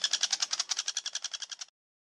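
A young woodpecker calling: a fast, evenly repeated run of short high notes. It fades and stops abruptly about 1.7 seconds in.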